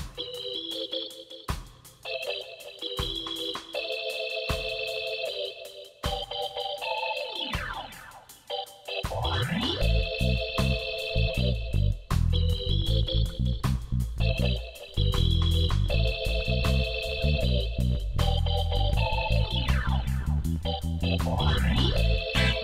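Background music: organ-like electronic keyboard chords with sweeping glides, joined by a steady bass and beat about nine seconds in.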